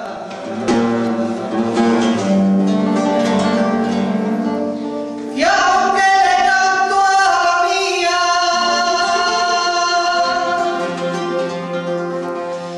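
Flamenco guitar playing, joined about five seconds in by a woman's flamenco singing (cante) with long held notes over the guitar.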